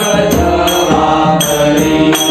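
Marathi devotional bhajan: voices singing over a sustained harmonium, with a barrel drum (pakhawaj) and small hand cymbals (taal) keeping a steady beat of strokes.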